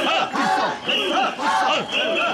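Mikoshi bearers chanting in unison as they carry the portable shrine, a rhythmic shouted call repeated about twice a second.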